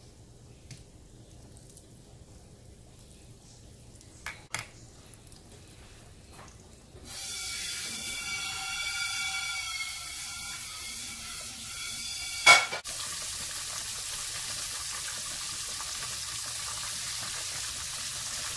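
Floured jack crevalle fillet frying in hot oil in a pan. It is quiet at first, with a couple of faint clicks, then a steady sizzle sets in about seven seconds in and holds. A single sharp click comes a few seconds after the sizzle starts.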